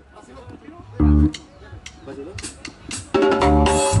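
Live band of electric bass, electric guitars and drum kit starting a number: one loud accent from bass and bass drum about a second in, then the full band comes in with a held chord about three seconds in.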